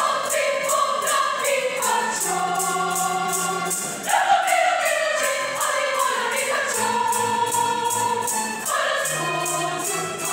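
Choir singing in harmony, accompanied by an electronic keyboard, with a tambourine keeping a steady beat of about three strokes a second.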